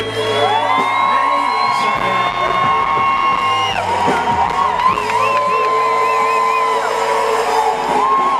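Live gospel band and singers: a voice holds two long notes over a sustained bass, breaking off about halfway through and again near the end, while the crowd whoops and cheers.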